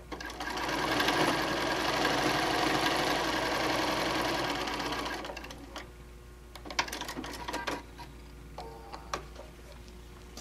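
Computerized sewing machine stitching a quarter-inch seam through two layers of quilting cotton. It speeds up in the first half-second, runs steadily for about five seconds, then slows and stops. A few sharp clicks follow as the fabric is pulled out from under the foot.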